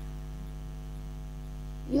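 Steady electrical mains hum: a low, unchanging drone with a buzzy ladder of overtones, picked up on the recording. A woman's voice starts again just at the end.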